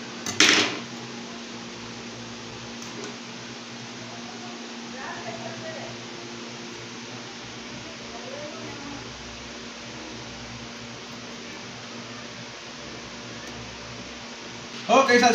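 Steady electrical hum from a kitchen appliance under room hiss, with one short, loud noise about half a second in.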